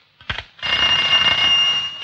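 A brief click, then an old telephone bell rings in one long ring that starts about half a second in and fades near the end, signalling an incoming call.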